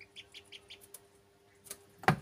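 Domestic ducklings peeping faintly, a quick run of four short high peeps in the first second, followed by a few sharp taps of beaks pecking at rice on the floor.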